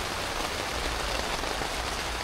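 Torrential rain drumming steadily on a tent's fabric, heard from inside the tent.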